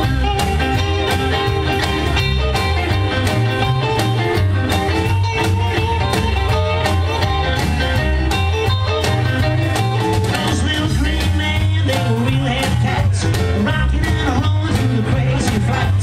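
Live rock and roll band playing an instrumental break with no vocals: upright double bass, drums, electric guitar and saxophone over a steady driving beat.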